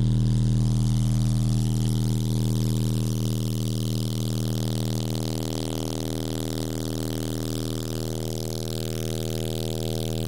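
Timpano TPT-3500 12-inch car subwoofers playing a steady, loud low bass test tone at full power, with many overtones and a hiss above it, holding level while the amplifier output is metered.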